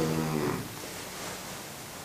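A man's held voiced sound trailing off in the first half second, then a pause with only faint room hiss.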